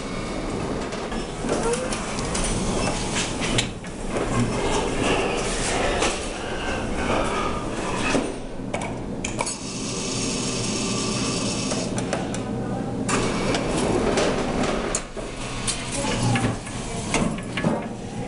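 Continuous clattering and rumbling with scattered knocks and rattles, briefly dipping a few times: the mechanical and ambient noise around a claw machine in play.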